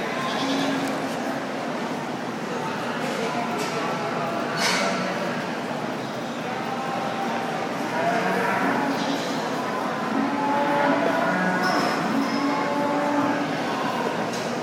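Show goats bleating several times, short held calls in among a murmur of crowd chatter in an arena.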